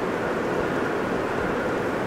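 Steady background hiss of a room or recording, with no speech.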